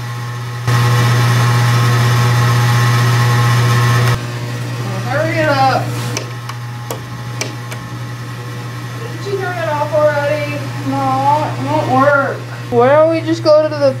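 A loud, steady electrical buzz starts suddenly about a second in and cuts off about three seconds later, over a constant low hum.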